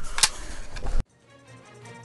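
A couple of sharp clicks from a prop submachine gun being grabbed and handled, then an abrupt cut to quiet background music with a low held note.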